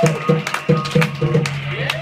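Live drum kit being played: a loose run of about six drum strokes over a steady low hum, with a sharp crack near the end.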